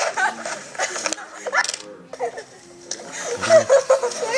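Voices talking and laughing, played back through a laptop speaker, with a few clicks between them.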